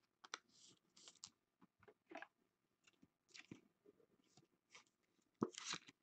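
Faint handling of a trading card and a clear plastic card holder: scattered soft crinkles and light clicks, then a sharper, louder click about five and a half seconds in as the holder is closed over the card.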